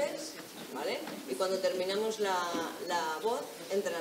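A woman's voice singing a simple melody in short phrases, the kind of line an audience is asked to repeat back.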